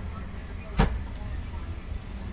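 Steady low hum of an airliner cabin parked at the gate, with one sharp click about a second in.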